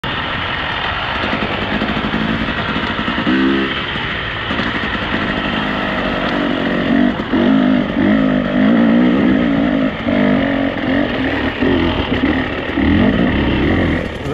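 Dirt bike engine running under throttle on a rough trail, its pitch rising and falling as the rider opens and closes the throttle, busier in the second half.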